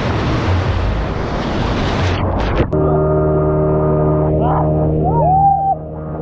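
Waves breaking and rushing in the shallows for the first couple of seconds, then a cut to a towing speedboat's engine running at a steady pitch, with riders shouting over it.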